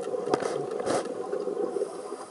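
Scuba regulator exhalation heard underwater: a burst of bubbling and crackling as exhaled air escapes, loudest about a second in.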